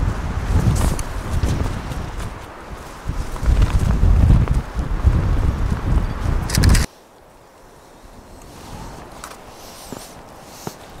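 Wind gusting across the microphone, a deep rumbling buffet that swells and eases, stops abruptly about two-thirds of the way through. After that, only a quiet background with a few faint footsteps.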